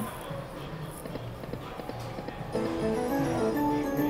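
Video slot machine's reels spinning with faint ticking, then about two and a half seconds in a run of stepped electronic chime notes starts as the machine counts up a win.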